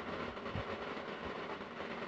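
Faint pen strokes on notebook paper over a steady low background hiss, with a soft low bump about halfway through.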